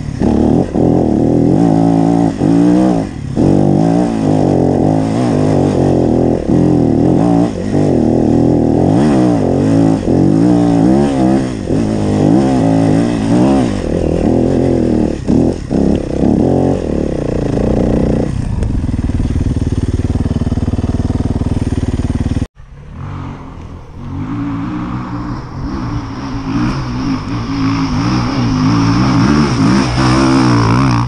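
Yamaha enduro dirt bike engine ridden hard on a rough trail, its revs rising and falling constantly with the throttle, then held steadier for a few seconds. After an abrupt cut about two-thirds in, another dirt bike's engine is heard more faintly and grows louder toward the end.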